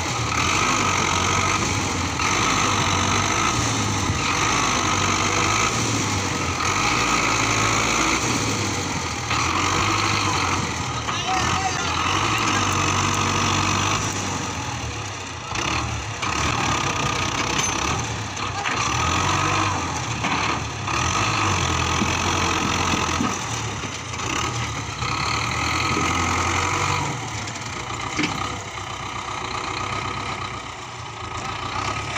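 Belarus 510 tractor's diesel engine working under load to pull a heavily loaded trolley stuck in mud, its note shifting every second or two.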